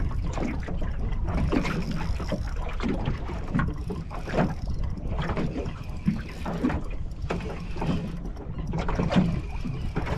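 Lake water slapping against the hull of a small fishing boat, heard as irregular knocks over a steady rumble of wind on the microphone.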